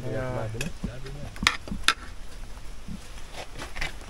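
A metal spoon clinking and scraping against a steel bowl and cooking pot as food is served, a few sharp knocks, the loudest two about a second and a half in and half a second apart.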